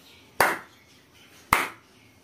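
One person clapping slowly by hand: two sharp claps about a second apart.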